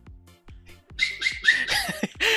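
Several quick hissing puffs with a short rising whistle, starting about a second in, over quiet background music.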